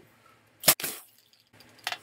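A sharp puff of air about two-thirds of a second in, then a second, shorter one close behind, as the end of a long yellow twisting balloon is blown up into a small round bubble.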